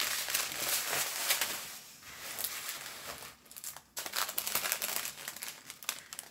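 Small clear plastic bags of diamond-painting drills crinkling as they are handled. The crinkling comes in fits and starts, dropping away briefly twice near the middle.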